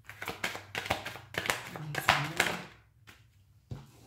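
A foil-finish tarot deck being shuffled by hand: a quick run of papery slaps and riffles for a few seconds, then a single tap near the end.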